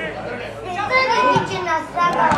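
Several raised voices calling out and shouting over one another on a football pitch as a free kick is struck, the calls growing louder about a second in.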